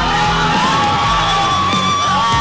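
Background rock music with a long held high note that steps up about half a second in and holds.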